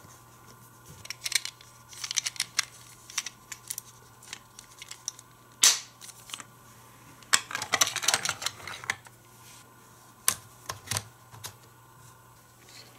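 Hard plastic toy track-set parts being handled and snapped together: a run of sharp clicks and light rattles, with one loud snap a little before the middle and a burst of rapid clattering a little after it.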